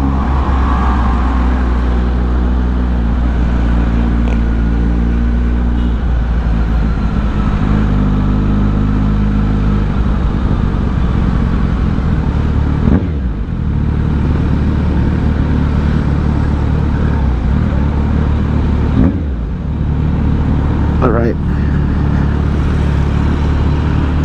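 Kawasaki Z900 inline-four engine with an aftermarket exhaust, heard from the rider's seat while riding in traffic. Its note holds steady, then climbs sharply and falls back about halfway through and twice more near the end as the throttle is opened and closed.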